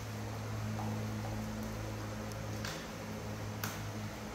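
A steady low hum, with a few short sharp clicks: a faint pair about a second in, then two louder ones about two-thirds through and just before the end.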